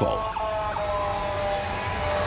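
Emergency-vehicle siren sounding as a few high steady tones that drift slightly lower in pitch.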